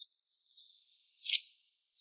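Soft rustling of clothing, a padded jacket and jeans, as a hand moves at a pocket: a faint rustle about half a second in and a sharper, louder one just past a second. Faint steady high chirring, like crickets, sits underneath.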